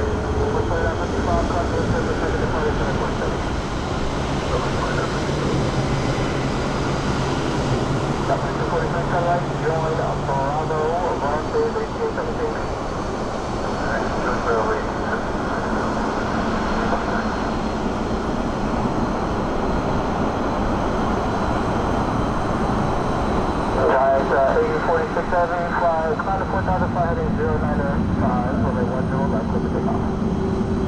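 Boeing 747-400 jet engines running at taxi power as the jet turns onto the runway: a steady, broad noise heavy in the low end that does not rise or fall.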